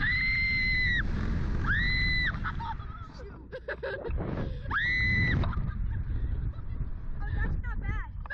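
Riders screaming on a Slingshot reverse-bungee ride: three long, high, steady-pitched screams, the first right at the start and the others about two and five seconds in. Wind rushes over the on-board microphone throughout, and shorter gasps and laughs follow near the end.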